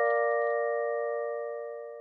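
Ringing chord of a bell-like chime from a logo sting, several clear tones held together and fading slowly away.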